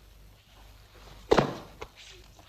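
One dull, heavy thump about a second and a third in, then a faint tap: a body impact during a hand-to-hand sambo arm-hold demonstration done with a strike.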